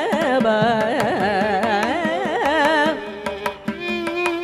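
Carnatic classical music: a woman sings with heavily oscillating, ornamented pitch (gamakas) over mridangam strokes, with violin accompaniment. About three seconds in the voice stops, and a held violin line and the drum carry on.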